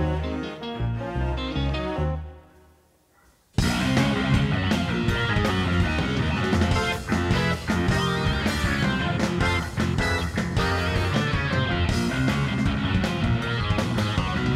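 Live progressive rock: a low, stepping instrumental passage dies away to near silence about three seconds in, then the full band of drums, bass, electric guitar and keyboards comes in all at once, loud and dense, and keeps going.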